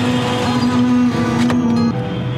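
Road traffic noise mixed with background music of long held low notes. A short sharp click comes about one and a half seconds in.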